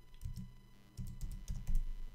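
Typing on a computer keyboard: a string of separate keystrokes, coming in a quick run about a second in.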